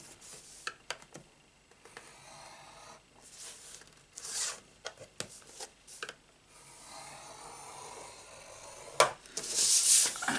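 Scoring stylus drawn through card stock along the grooves of a scoring board: a series of short scratchy strokes with small clicks, then a longer scrape. About nine seconds in there is a sharp click, followed by the card rustling and sliding across the board as it is turned.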